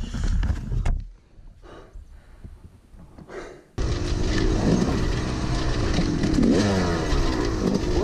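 Dirt bike engine on a trail ride: a low rumble in the first second, a quiet stretch, then the engine comes in abruptly loud at about four seconds and runs on, its pitch rising and falling with the throttle.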